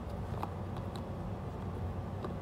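Steady low background hum with a few faint clicks and rustles as hands work a just-loosened drysuit valve free of the suit.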